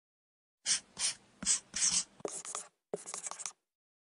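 Marker pen drawing strokes: four separate scratchy strokes a little under half a second apart, then quicker scribbling with small ticks, stopping about half a second before the end.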